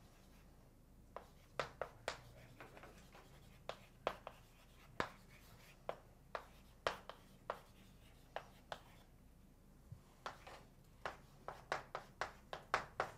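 Chalk tapping and scratching on a blackboard as a formula is written: a string of short, irregular strokes with a brief pause about nine seconds in.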